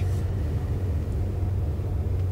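A steady low rumble, with nothing else happening.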